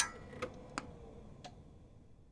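A sharp click, then three fainter, unevenly spaced ticks over a faint fading tone.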